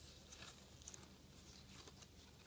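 Near silence, with a few faint, brief rustles of young coconut leaf strips being threaded and pulled through the weave.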